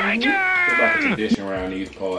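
A person's high-pitched, drawn-out "mmm" that slides down in pitch over about a second, followed by lower voiced murmurs.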